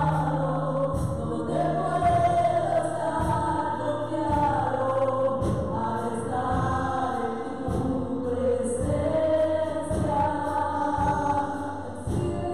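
Live gospel worship song: women's voices singing together into microphones over a band with drums and keyboard.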